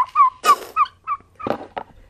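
Turkey calling: a quick run of short, bending notes, about three a second. A brief rustling burst comes about half a second in, and two knocks near the end.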